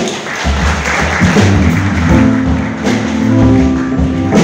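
A live jazz-rock band starts to play: low bass notes come in first, then a held chord sounds from about two seconds in.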